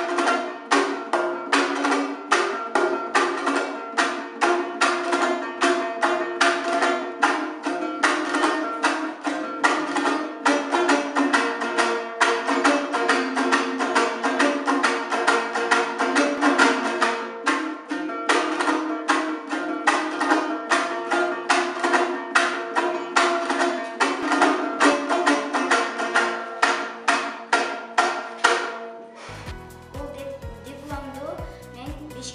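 Instrumental music on a plucked string instrument, strummed in a fast, steady rhythm of about four to five strokes a second, breaking off shortly before the end.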